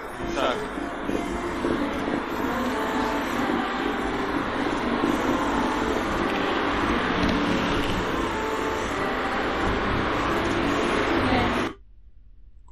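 City street traffic noise with a man's voice talking over it, from a walking street vlog; it cuts off suddenly near the end.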